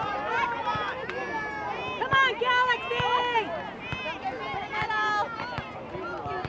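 Several high-pitched voices shouting and calling out across an open soccer field during play, unintelligible and overlapping, with a few sharp knocks among them.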